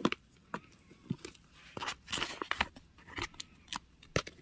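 Tweezers tapping and clicking against a clear plastic container while picking up small stickers: a string of sharp, separate clicks, thicker around the middle with a short rustle.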